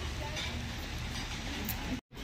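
Street ambience: a steady low rumble of traffic with faint voices.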